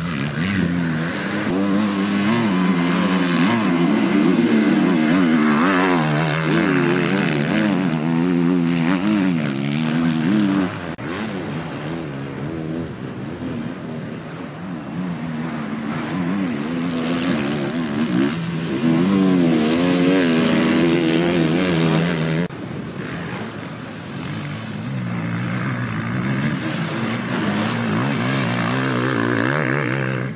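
Enduro motorcycle engines revving hard, pitch rising and falling over and over as the riders accelerate and shift gears through the turns of a dirt course. The sound cuts abruptly twice, about a third and two-thirds of the way through, as one bike's pass gives way to the next.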